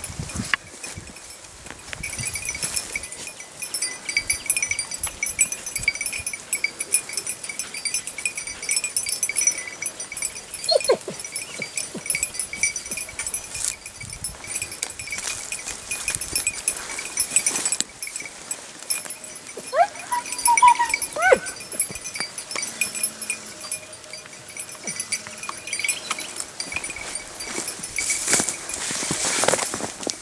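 Hare hound working the scent on a hillside, its collar bell jingling steadily as it moves. A few brief yelps come from the hound about eleven seconds in and again around twenty seconds in.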